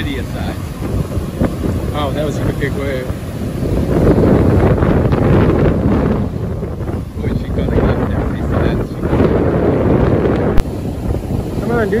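Gale-force wind buffeting the microphone over the rush of breaking surf, swelling in strong gusts about four seconds in and again later. Snatches of faint voices come in the first few seconds, and there is one sharp click shortly before the end.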